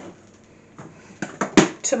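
A few light clicks and knocks from the electric hand mixer being picked up off its rest over a glass mixing bowl, the loudest a single sharp clack about one and a half seconds in.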